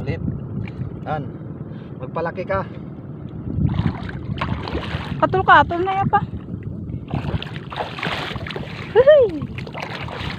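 Shallow seawater splashing and sloshing in several noisy spells as a person wades and reaches by hand into seagrass shallows, with short voices calling in between and one drawn-out call near the end.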